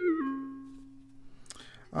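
Synthesized notes from an iPad touch-instrument app: the last steps of a descending pentatonic run, then a single C4 held and fading away over about a second and a half.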